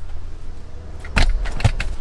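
Handling noise inside a car: a short burst of rattling, jingling clicks about a second in, with a couple more near the end, over a steady low rumble.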